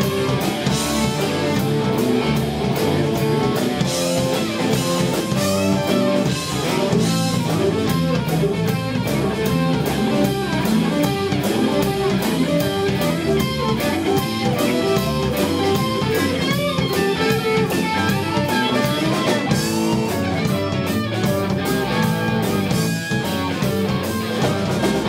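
Live southern rock band playing an instrumental passage: electric guitars over bass and a steady drum-kit beat.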